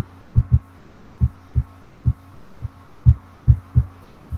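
About ten dull, low thumps at irregular intervals, two or three a second, over a faint steady hum.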